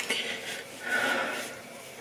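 Soft rubbing of a damp cotton pad wiped over the skin of the face, in two faint swells, the second about a second in.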